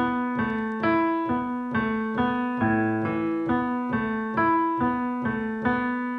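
Piano playing a slow A sus2 arpeggio one note at a time, a little over two notes a second, each note left ringing. The figure A, E, B, A, E, B, A, B starts again from the low A about two and a half seconds in, so it is played twice.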